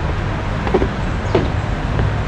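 Steady low rumble of city road traffic, with two brief vocal sounds just under a second and about a second and a half in.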